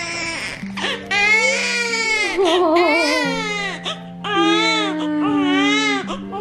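Newborn baby crying during her first bath: a string of loud, high-pitched wailing cries, each about a second long, with brief gasps between them and a wavering cry in the middle.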